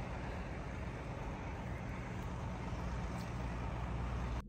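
Steady low rumble of idling buses and trucks under an even outdoor hiss, with no single event standing out.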